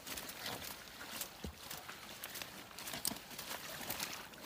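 Wading footsteps in soft wet mud: irregular squelches and splats from rubber boots, with crackles from trampled dead plant stalks.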